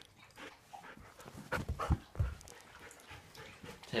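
Siberian husky panting close by, with a few louder thumps about a second and a half to two and a quarter seconds in.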